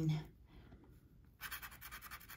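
A handheld scratcher tool scraping the coating off a lottery scratch-off ticket in quick, repeated strokes, starting about one and a half seconds in after a brief pause.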